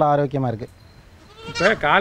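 Goats bleating: one call trails off about half a second in, and another starts near the end.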